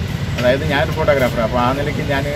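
A man speaking to the camera, with a steady low rumble underneath.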